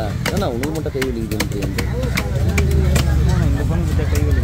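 Heavy fish-cutting knife chopping fish into chunks on a wooden block: irregular knocks, several a second, over voices talking and a low rumble that grows louder about halfway through.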